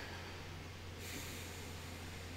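A man breathing out softly through his nose, a faint hiss that swells about a second in, over a steady low hum.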